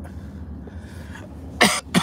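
A man coughs sharply near the end, over the steady low hum of the vehicle cabin.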